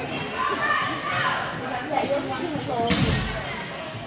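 Indistinct voices of children and spectators, with one sharp thump about three seconds in: a soccer ball being struck on indoor turf.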